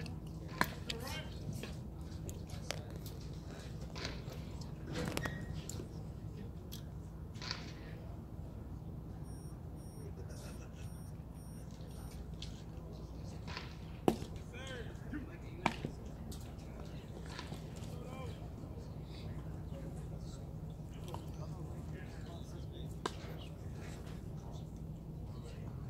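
Baseball field ambience: faint distant voices over a steady low hum. A few sharp knocks from the ball in play stand out, the loudest about fourteen seconds in and another a second and a half later.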